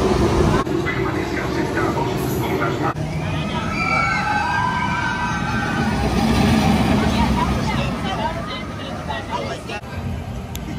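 Expedition Everest roller coaster: a ride train rolling with a steady rumble, then several rising and falling cries from riders over the running coaster.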